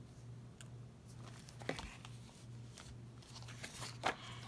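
Faint handling of a ring-bound paper and cardstock journal: a few soft taps and page rustles over a low steady hum.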